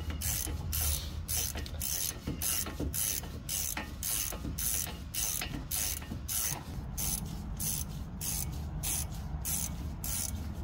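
Socket ratchet wrench being worked back and forth to run down a brake caliper bolt, its pawl clicking in quick even strokes, about three a second.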